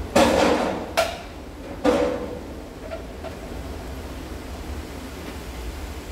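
Handling noises at a sewing table: a clattering knock followed by two sharper knocks within the first two seconds, then only a steady low background rumble.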